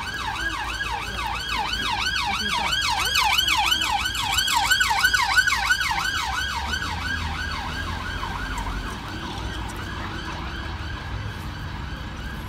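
Emergency vehicle siren on a fast yelp, its pitch sweeping up and down about three times a second. It grows louder to a peak in the middle, then fades, with a low rumble of traffic underneath.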